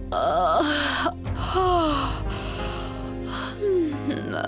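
A woman gasping and moaning in distress: a wavering cry near the start, then moans that fall in pitch, over dramatic background music.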